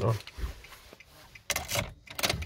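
Brief jangle and rustle of a car key and key ring about one and a half seconds in, as the key is swapped in the ignition lock.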